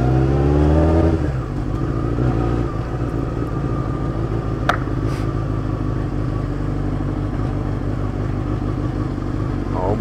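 Motorcycle engine accelerating, its pitch rising for about the first second, then running steadily at low speed. A single sharp click about halfway through.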